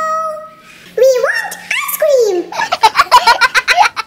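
Interactive baby doll's recorded baby voice: cooing and babbling with up-and-down glides, then a quick run of giggling laughter in the second half.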